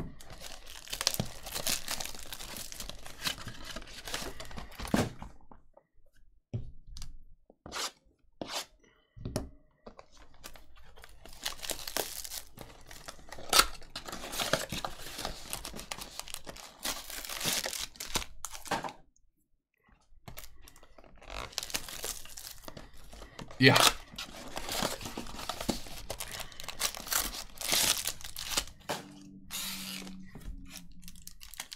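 Cardboard of a Bowman's Best baseball card hobby box being torn and pulled apart by hand, in stretches of tearing and rustling with short pauses between them, and a couple of sharp snaps. Wrapped card packs crinkle as they are handled.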